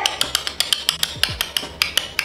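A rapid run of sharp clicks, about eight a second, over a background beat with deep kick drums.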